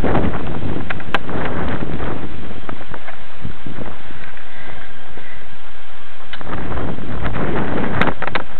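Wind buffeting the small onboard camera's microphone on a model aircraft, loud and rough. It eases for a few seconds in the middle, then picks up again.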